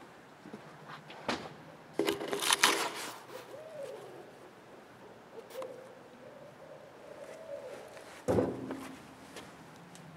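Owls hooting in the dark: a loud burst of calls about two seconds in, a long wavering hoot in the middle, and another loud call near the end.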